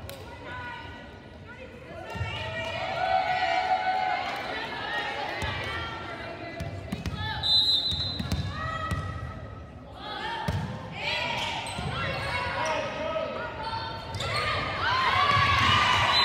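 Indoor volleyball game in a reverberant gym: players' calls and spectators' voices, with a volleyball thumping on hands and the hardwood floor. A short high whistle sounds about halfway through, the referee's signal to serve, and the voices grow louder near the end as the rally finishes.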